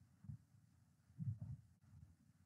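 Faint low thuds in a quiet room: one, then two close together about a second later.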